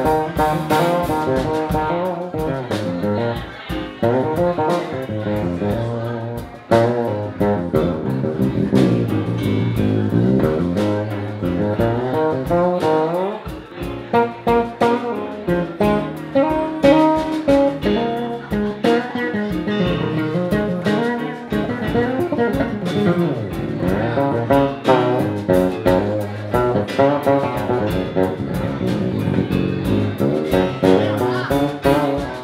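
Live band playing an instrumental passage with electric keyboard, drum kit and electric bass guitar keeping a steady beat.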